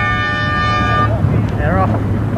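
Race starting horn, one long steady note that cuts off about a second in, over wind on the microphone and a low steady hum.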